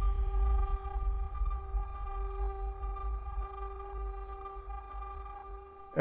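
Synthesized intro drone: several steady held tones over a deep low rumble, slowly fading out.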